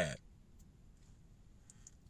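Near silence: quiet room tone with a few faint small clicks, one about half a second in and a couple near the end.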